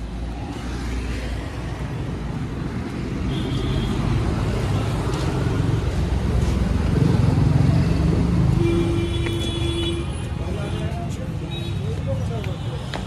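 Street traffic: a steady low rumble of passing vehicles with wind buffeting the microphone, swelling to its loudest as a vehicle goes by a little past the middle. A short steady tone sounds about nine seconds in.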